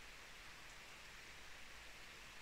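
Near silence: a faint, steady hiss of background noise inside a parked car.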